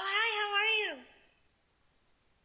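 A woman's voice holding one drawn-out, wavering note that slides down in pitch and stops about a second in.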